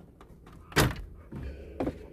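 Two knocks from parts being handled under the stripped-out dashboard of a car, a loud one just under a second in and a lighter one near the end.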